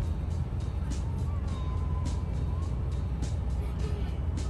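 Background music playing over the low, steady drone of a Class C motorhome driving on the highway, heard from inside the cab.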